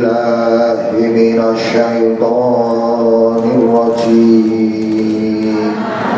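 A man reciting the Qur'an in a drawn-out, melodic chant, holding each note for a second or more with slight ornaments and short breaks between phrases.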